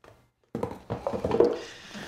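Cardboard product box being opened: its lid is lifted off and set down, with rubbing and light knocks, starting about half a second in.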